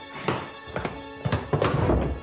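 Film score playing under a run of four dull thuds. The last thud, about one and a half seconds in, is the loudest and longest.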